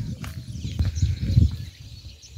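Wind buffeting the phone's microphone in uneven low rumbling gusts.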